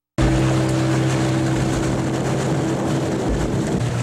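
A small boat's motor running at a steady, even pitch under rushing noise. It cuts in abruptly just after the start.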